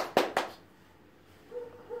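A few sharp hand claps, the last of a burst of clapping, ending about half a second in.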